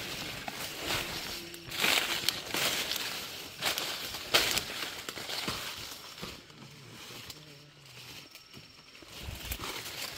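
Dry maize leaves and stalks rustling and crackling as people push through a standing dry cornfield, with footsteps on the litter underfoot. The crackles are irregular, louder in the first half and quieter near the end.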